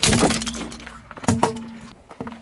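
A small brittle object being crushed under a car tyre on asphalt: a loud crunching crack, dying away, then a second sharp crunch about a second and a half in.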